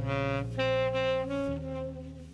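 Live jazz ballad: a saxophone plays a long held note over piano and bass accompaniment, fading toward the end.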